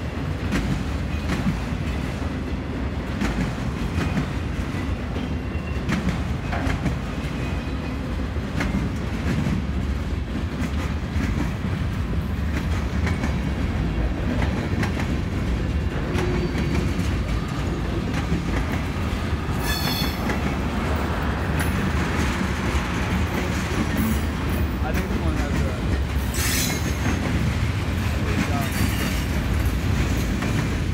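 Freight cars of a mixed freight train rolling past: a steady low rumble of wheels on rail with scattered clicks over the rail joints. Short high-pitched wheel squeals come in a few times in the last third.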